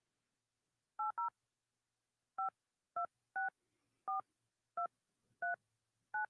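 Phone keypad touch tones (DTMF) as a phone number is dialled: eight short two-note beeps at uneven intervals, two close together about a second in, then the rest spread out about half a second to a second apart.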